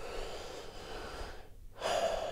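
A man breathing audibly during a pause in speech: one long breath lasting about a second and a half, a brief silence, then another breath drawn in near the end.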